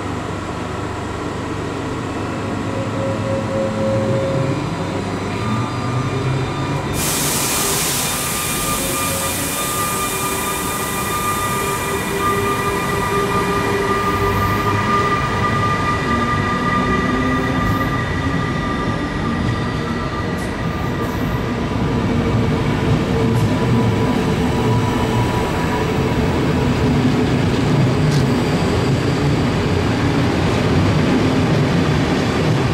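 SBB Re 460 electric locomotive pulling a passenger train out past the camera, its coaches then rolling by, with steady tones from squealing wheels and a slow low whine rising in the first few seconds. About seven seconds in a loud hiss starts suddenly and lasts some five seconds, and the rolling noise grows louder toward the end.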